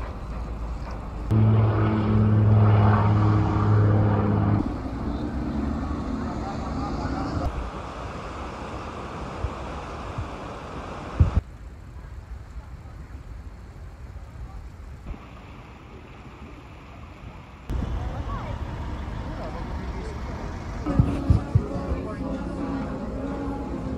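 A series of short outdoor clips of a harbour. The loudest is a steady low hum lasting about three seconds near the start, from a large vessel's engine or horn. In the last few seconds, indoors, people murmur and a few knocks are heard.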